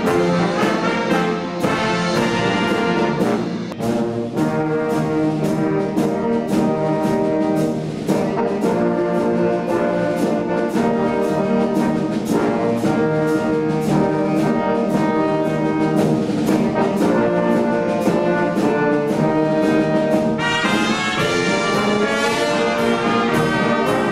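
A wind band of tubas, euphoniums, saxophone, trombones and trumpets playing ensemble music live, with a steady regular beat.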